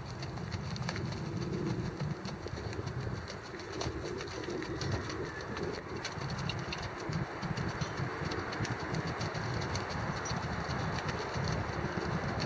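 A gaited horse's hoofbeats on frozen, rutted dirt as it moves in a smooth, even gait under a rider, an even rhythmic beat that keeps going throughout.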